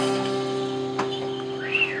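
Live band holding a steady sustained chord with no singing, with a single sharp click about a second in and a brief high note that rises and falls near the end.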